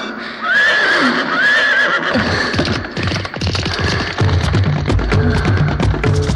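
Film dance-song music: two short wavering high cries in the first two seconds, then a fast, even percussion beat, with a bass line joining at about four seconds.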